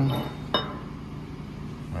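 A single sharp metallic clink about half a second in, steel connecting rods knocking together as one is lifted from the row on the bench, over a steady low hum.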